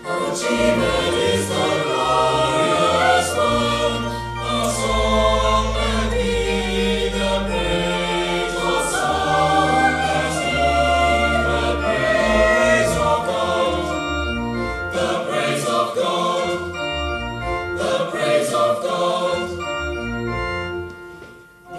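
Mixed choir of teenage boys and girls singing a sacred choral piece in harmony, with organ accompaniment holding low notes beneath the voices.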